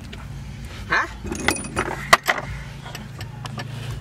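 Small hard parts clinking and rattling as car interior trim is handled, with a sharp click about two seconds in, over a steady low hum.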